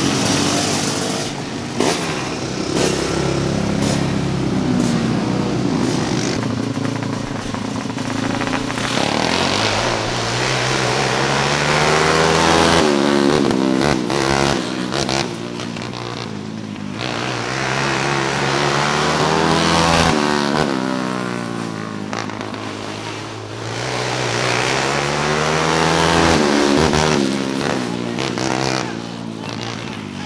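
Outlaw kart racing engines running and revving on a dirt track, the pitch rising and falling again and again as karts pass.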